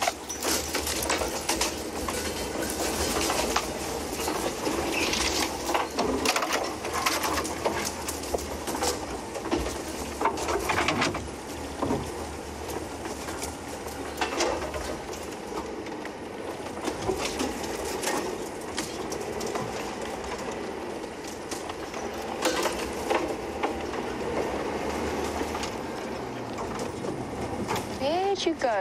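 Open safari vehicle driving slowly off-road through bush: a low, steady engine hum under frequent cracks and scrapes of branches and grass against the vehicle.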